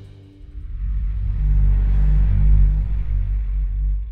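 Logo sting: a deep bass rumble with a faint airy whoosh over it, swelling in about half a second in, strongest past the middle, then easing off.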